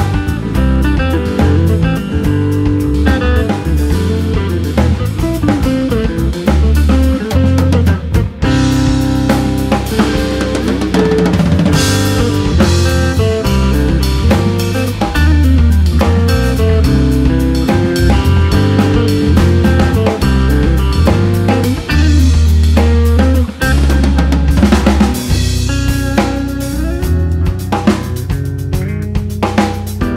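Instrumental piece played by a guitar, bass and drum-kit trio: a drum groove with snare and bass drum under a bass line and guitar.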